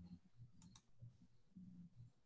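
Near silence: faint room tone with two quick, faint clicks close together about two-thirds of a second in.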